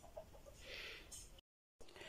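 Near silence: faint outdoor background with a faint, indistinct sound about a second in, broken by a brief dead-silent gap at an edit.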